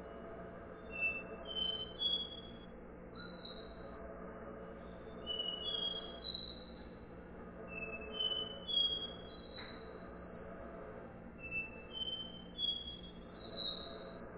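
Copper seedeater (caboclinho, Sporophila bouvreuil) singing its 'dó ré mi' song: short, clear whistled notes stepping up and down in pitch, in phrases of a few notes with short gaps between them.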